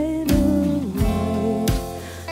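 A small band playing an instrumental passage: guitar, upright bass and keyboard holding notes over drum hits about every 0.7 seconds.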